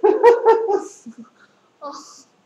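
A loud burst of laughter, about four quick pitched 'ha' pulses in the first second.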